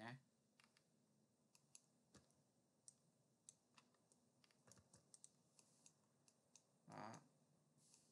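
Near silence with faint, scattered computer mouse clicks, a dozen or so irregularly spaced, and a short, slightly louder noise about seven seconds in.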